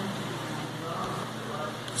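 Steady, faint background noise with no distinct event.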